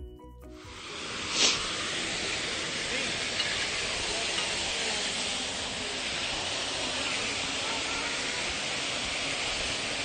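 Steady rushing of a small waterfall, an even hiss with no pitch, with one brief louder burst about a second and a half in.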